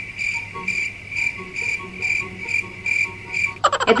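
Cricket-chirping sound effect: a high, steady trill pulsing about twice a second, with faint tones beneath. It starts and stops abruptly, with speech taking over near the end.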